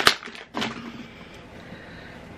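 Plastic packet of makeup wipes handled, with a sharp click at the start and a brief second noise about half a second in, then quiet room tone.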